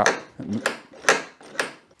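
Galvanised Gatemate ring latch handle turned back and forth, its spindle working the latch with a few sharp clicks about every half second.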